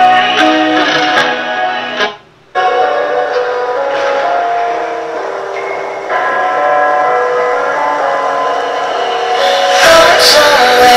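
Copyright-free music with long held notes and chords, played through a Pyle P3001BT amplifier into a super horn tweeter, a 10-inch and a 6.5-inch speaker. It cuts out for about half a second about two seconds in, then carries on.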